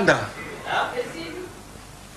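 Speech only: a man's voice speaking briefly, with the end of a word at the start and a short utterance about a second in.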